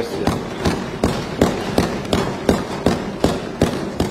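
Many legislators thumping their desks in applause: a fast, even pattern of thuds, about three a second.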